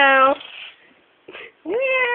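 A man imitating a cat: one drawn-out meow that ends about a third of a second in, then a second, rising meow-like call near the end.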